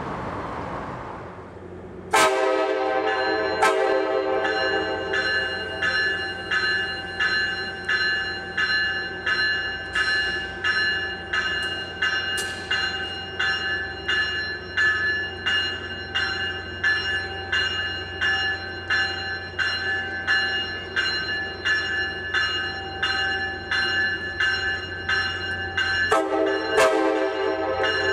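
Warning bell on a Capitol Corridor California Car cab car ringing steadily, about one and a half strokes a second, as the train creeps into the station. A steady low hum of the train lies underneath. A couple of seconds of distant train rumble come before the bell starts sharply.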